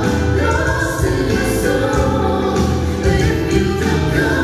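A trio of two men and a woman singing together into microphones over amplified musical accompaniment, with long held notes.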